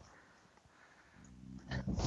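A horse stuck in deep snow gives a low, drawn-out groan that starts a little past halfway and grows louder toward the end.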